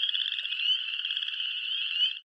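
A chorus of frogs giving rapid, high-pitched pulsing trills, with short rising trills overlapping one another.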